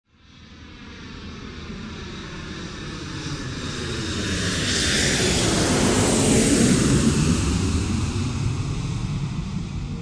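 Jet engines of a large Antonov cargo aircraft moving along the runway. The noise builds steadily, peaks about five to seven seconds in as the aircraft passes, then eases slightly.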